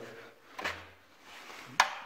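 Two light metallic clicks of a spring-puller hook tool against a dirt bike's exhaust springs, the second sharper and near the end.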